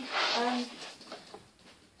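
A voice holds a short filler sound at the start, then faint knocks and rustling as the corrugated plastic hose of a Numatic George wet-and-dry vacuum is handled and fitted, with the vacuum switched off.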